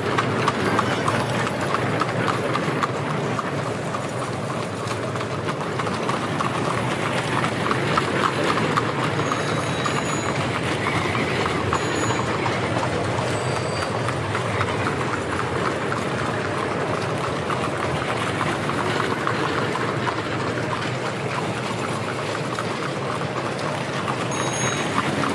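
A dense, continuous clatter of many quick knocks over a steady hiss.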